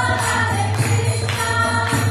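A group of people singing a devotional chant together, with hand-clapping and small percussion keeping the beat.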